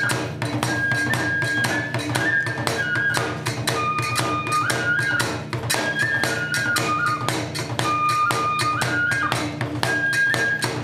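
Kagura music: a Japanese bamboo transverse flute (fue) playing a melody of held notes that step up and down, over rapid, even strikes of the taiko drum and small hand cymbals, about five a second.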